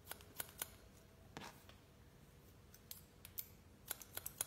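Faint snips of hairdressing scissors cutting wet hair: a few quick snips at the start, one about a second and a half in, and a run of snips near the end.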